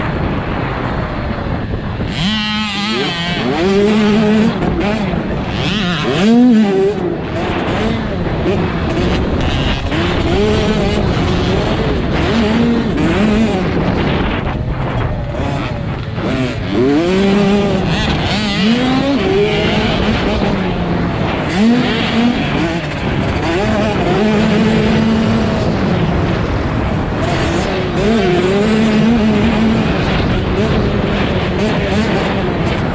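Dirt bike engine ridden on track, revving up and dropping back again and again as the throttle is worked through turns and straights, over steady wind and dirt noise.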